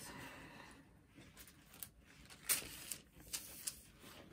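Paper towel being handled: soft rustling, then a few short sharp crinkles, the loudest about two and a half seconds in.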